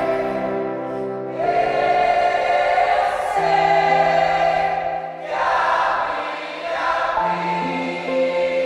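A choir and congregation singing a Portuguese-language worship song together, over sustained held chords from the band. The sung phrases swell in twice, with a short dip in between.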